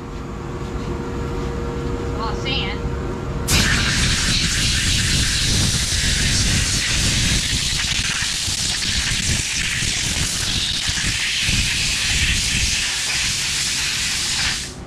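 Compressed-air blow gun hissing loudly and steadily as it blows blast dust off a freshly sandblasted AR lower receiver; the hiss starts suddenly about three and a half seconds in. Before it, a steady machine hum.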